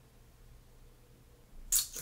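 Quiet room tone, then near the end a brief, bright double scrape as a lip gloss cap is pulled off and its applicator wand is drawn out of the tube.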